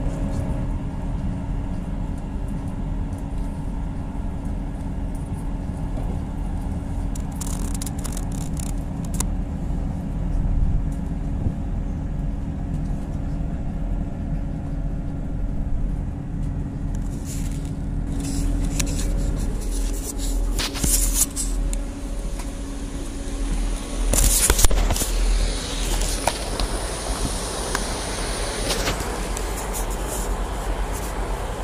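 Steady rumble heard inside a moving passenger train, with a low engine hum running under it. The hum drops away about two-thirds of the way through, and the last few seconds turn rougher, with scattered clicks and knocks as the train comes into a station.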